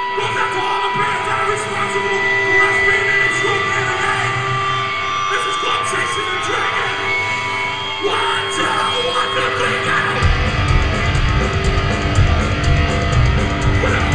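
Live hardcore punk band on stage, amplified guitars ringing with held notes and feedback, then about ten seconds in the drums and bass come in hard and the full band plays.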